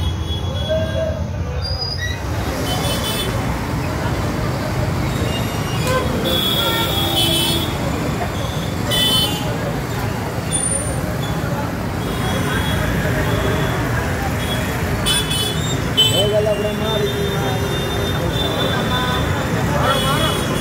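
Busy street ambience: steady traffic and engine rumble under a crowd of people talking and calling out, with a vehicle horn sounding briefly near the middle.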